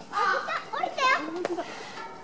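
Young children's voices chattering, with one high-pitched cry about a second in.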